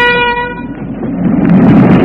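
A steady horn blast that stops about half a second in, followed by a loud rushing rumble that swells about a second later.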